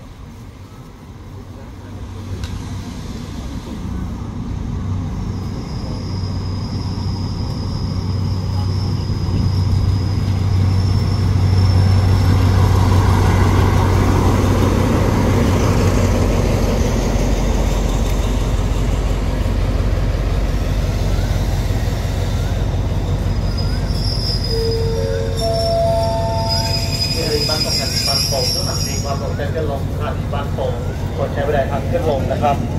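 Diesel locomotive hauling a passenger train pulling into the platform: its low engine hum grows louder over the first ten seconds or so, with high, thin brake squeals, and several shorter squeals late on as the train comes to a stop.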